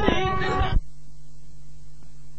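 A singer holding a wavering, vibrato-laden note over musical accompaniment, cut off abruptly just under a second in, leaving only a faint steady low hum.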